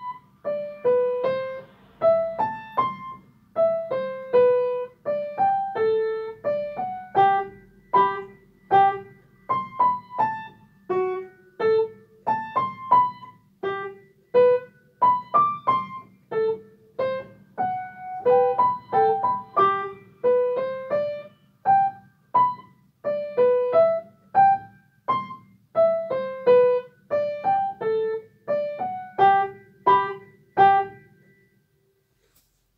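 Waldstein upright piano played slowly with both hands: a simple beginner's melody of evenly paced single notes, about two a second, in the middle register.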